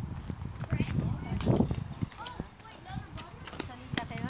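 Indistinct voices of people talking nearby, with short irregular knocks like footsteps on stone paving, over a low rumble.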